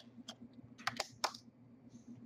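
Pencil drawn along a steel ruler on a foamcore sheet: a few light, sharp clicks, most of them bunched in the middle.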